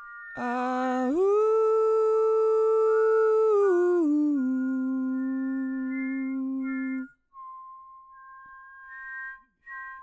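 Multitracked male voice singing wordless harmonies without accompaniment: a long held chord swells into place about a second in, steps down around four seconds in, and cuts off at about seven seconds. Softer, thin high notes follow.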